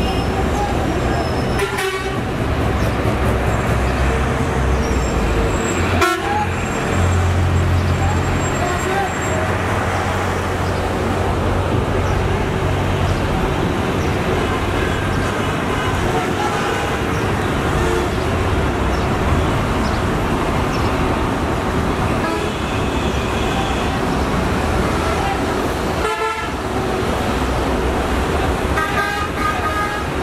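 Volvo B9R coach's diesel engine running heavily close by amid road traffic, with vehicle horns tooting several times, mainly in the second half.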